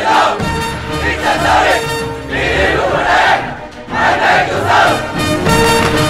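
A large group of men shouting in unison in short, repeated chant-like phrases over dramatic film-score music.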